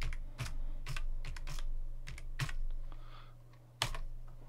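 Computer keyboard typing: an uneven run of about eight single keystrokes as a word is typed, ending with a louder keystroke just before the end, the Enter key that submits the search.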